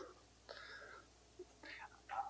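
Near silence with a faint, low voice murmuring briefly twice in a pause between spoken phrases.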